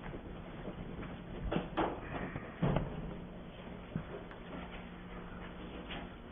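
Quiet meeting-room tone with a low steady hum, broken by a few short knocks and rustles from people handling papers and objects at folding tables; the loudest is a thump a little under three seconds in.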